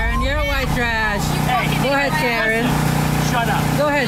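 People arguing in raised voices, a woman's voice and a man's, over a steady low hum.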